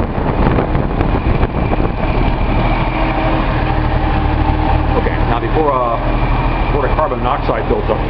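Datsun L28 fuel-injected straight-six engine running steadily.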